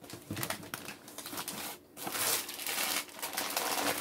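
Rustling and crinkling of food packaging being handled: a cardboard soup carton set down into a cardboard box, then a plastic bag of dried pinto beans picked up. It comes in two stretches with a short lull a little before halfway.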